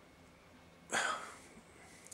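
A single short breath of air from the man, a quick noisy rush about a second in that fades within half a second, against quiet room tone.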